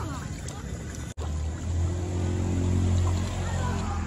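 An engine running steadily at low speed: a low hum that starts a little over a second in, after a brief dropout, and holds steady in pitch.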